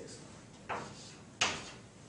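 Two brief scraping knocks a little under a second apart, the second sharper and louder than the first.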